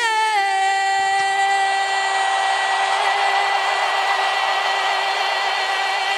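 A female vocalist, unaccompanied, holds one long final note in a stadium. The note steps down slightly about half a second in and then stays steady, while crowd cheering swells beneath it.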